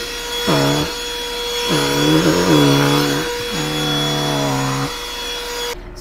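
Black & Decker cordless vacuum running with a steady whine as its head is pushed over a rug; the motor cuts off near the end.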